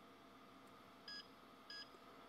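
Xeltek SuperPro 6100N chip programmer giving two short, faint beeps about two thirds of a second apart. The beeps signal a failed blank check, because the chip in the socket has already been programmed.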